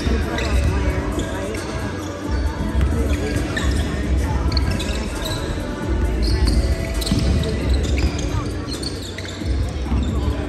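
Basketball being dribbled on a hardwood gym floor during play, with sneakers squeaking and voices from players and spectators.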